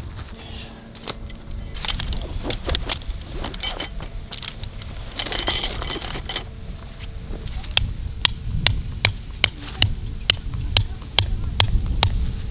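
Bundle of metal tent pegs jangling and clinking together on a clip at the belt: scattered clinks at first with a dense jangle about halfway through, then an even run of sharp clinks at about two to three a second.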